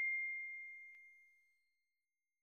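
The fading tail of a bell-like 'ding' notification sound effect: one high ringing tone dying away and gone about a second in.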